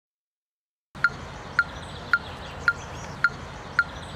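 Metronome ticking steadily, starting about a second in: sharp, short pitched clicks at just under two a second, six in all.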